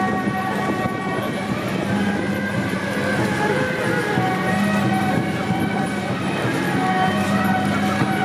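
Traditional Taiwanese temple-procession music with long held horn-like tones that break off and come back every second or two, over street and crowd noise.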